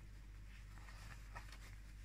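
Faint rustling of cotton fabric and tape ties being handled, with a few soft brushes, over a low steady hum.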